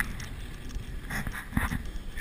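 Wind rumbling on an action camera's microphone on an open boat, with two short rustling bursts a little over a second in.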